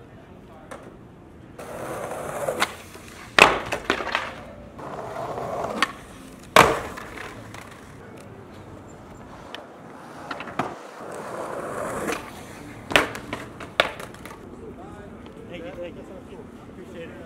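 Skateboard wheels rolling over stone pavement in three runs, each broken by sharp cracks of the board striking the ground, the loudest about three and a half and six and a half seconds in.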